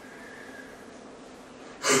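Quiet room tone with a faint steady hum in a pause between sentences; near the end a man draws a sharp breath as his speech starts again.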